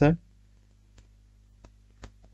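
The last syllable of a spoken phrase, then a pause with a low steady hum and two faint clicks, about a second in and about a second and a half in.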